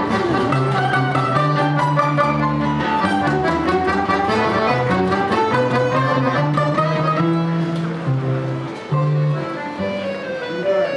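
A balalaika ensemble plays an instrumental piece: held bass notes under a quick, busy melody of plucked strings.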